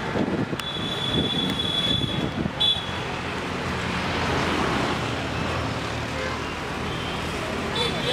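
Busy road traffic noise with a crowd's murmur. A high, thin steady tone sounds for about two seconds shortly after the start, followed by a short second one.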